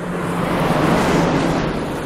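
A car sound effect: a rush of noise over a low, steady engine hum that swells about a second in and then eases off.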